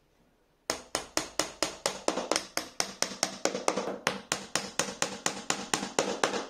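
Steel claw hammer tapping rapidly on a wooden board, about five blows a second, starting about a second in, knocking the board down onto wooden dowel pins to close the joint.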